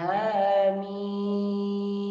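A man reciting the Quranic letters Ḥā-Mīm in tajwīd style, with a short melodic opening and then one long, steady held note on the drawn-out final syllable.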